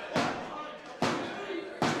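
A referee's hand slapping the wrestling ring canvas three times, about a second apart, counting a pinfall.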